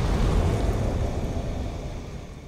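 A cinematic logo-sting sound effect: a deep, noisy rumble, the tail of a boom, fading steadily away.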